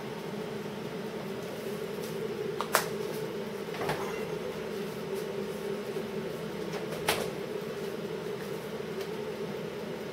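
Air fryer running steadily with a fan hum while it cooks, and two light clicks, about three and seven seconds in.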